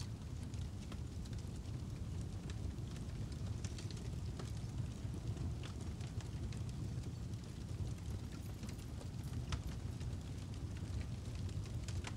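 Fire sound effect: a low, steady rumble with scattered faint crackles.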